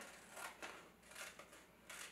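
Scissors snipping through newspaper: a few faint cuts.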